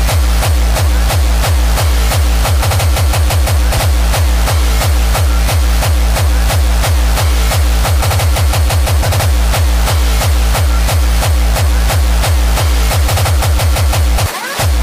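Hardcore electronic dance music: a fast, driving kick drum with heavy bass at about three beats a second, quickening into a rapid drum roll about eight to nine seconds in before the steady beat returns.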